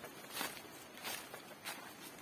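Footsteps of a person walking over dry leaf litter and pebbles, about three steps in two seconds.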